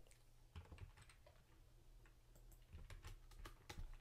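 Faint typing on a computer keyboard: scattered soft key clicks, more of them in the second half, over a low steady room hum.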